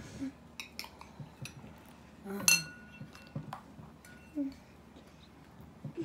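Metal spoon clinking and scraping against a ceramic bowl in scattered taps, the spoon held in the mouth to scoop marshmallows. The loudest clink comes about halfway through and rings briefly.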